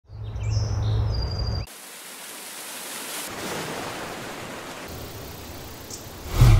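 Outdoor nature ambience. The first second and a half holds a low rumble with a few high bird-like chirps, then it cuts suddenly to a steady hiss of environmental noise.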